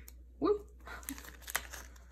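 Plastic binder sleeves crinkling, with a few light clicks, as a glossy holographic photocard is handled and fitted into a sleeve. A brief 'oy' sounds about half a second in.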